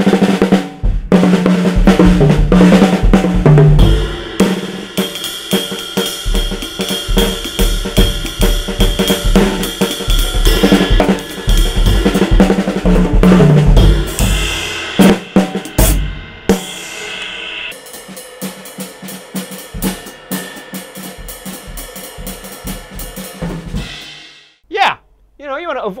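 Acoustic drum kit played with sticks: busy, hard-hit snare, toms, bass drum and cymbals for about sixteen seconds, with falling tom fills, then a softer passage that stops shortly before the end.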